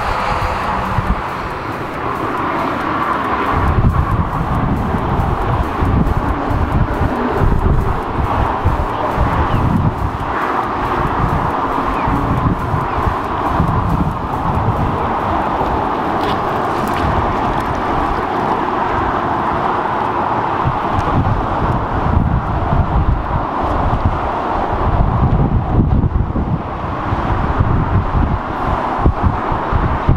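Wind buffeting the microphone in irregular gusts, over a steady hiss.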